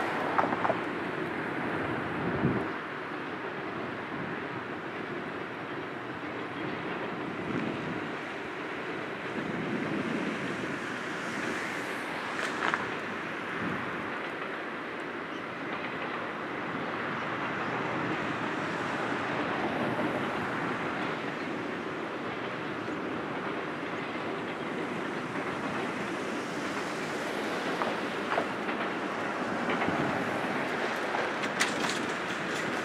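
Steady rumble of a long double-stack container train's cars rolling across a steel trestle bridge, heard from a distance, with a few brief sharp sounds, the clearest about twelve seconds in.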